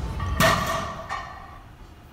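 Heavily loaded barbell set down after a deadlift: the plates hit the gym floor with a loud thud and land again with a smaller knock a moment later.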